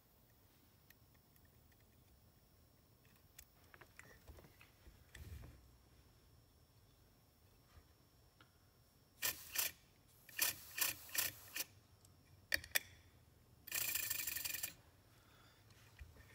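Accucraft Ruby live steam model's piston-valve cylinders running on compressed air while the valve timing is tested. After a long quiet stretch with faint handling clicks, a handful of short exhaust puffs come about nine to thirteen seconds in, then a hiss of about a second near the end.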